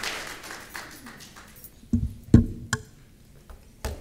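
Applause dying away, then a few sharp knocks and thumps from the lectern microphone being handled and adjusted, the loudest about two and a half seconds in.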